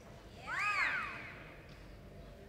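One high whoop from a spectator, rising and then falling in pitch, about half a second in, cheering the horse's spin in a reining run.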